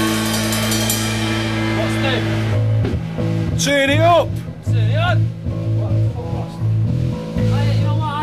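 Band music: a held guitar chord rings out for about two and a half seconds, then low bass notes carry on, with a brief voice calling or singing around the middle.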